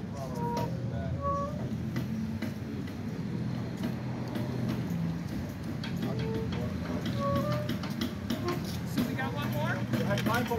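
Background talk among a street band's players between songs, with a few short, isolated held notes from their horns and scattered light clicks.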